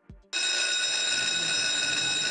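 An electric bell ringing continuously on one steady, shrill tone, starting suddenly just under half a second in.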